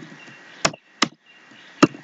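Computer keyboard keys clicking while code is typed: four sharp, separate keystrokes in two seconds over faint background hiss.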